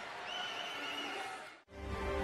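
Stadium crowd noise from the match broadcast with a faint high warbling whistle in it. About one and a half seconds in it cuts out suddenly and theme music with a low beat starts.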